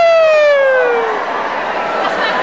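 One person's long, loud whooping cheer. It swoops up just before the start, then slides slowly down in pitch and fades out after about a second, over the hum of crowd chatter in a large hall.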